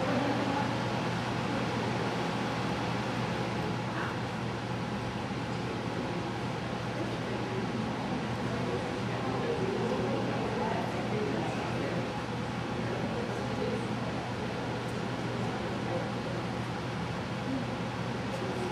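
Steady room ambience of a large hall: a constant low hum under faint, indistinct background chatter.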